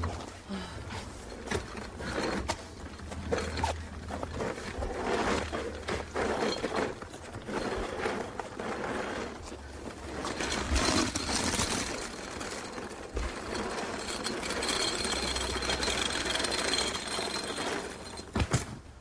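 A suitcase dragged over rough asphalt, giving a continuous clattering rattle and scrape.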